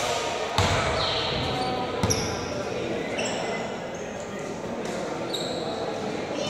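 A basketball bouncing on an indoor court, with two strong thuds about half a second and two seconds in, echoing in a large gym, with short high sneaker squeaks and voices around it.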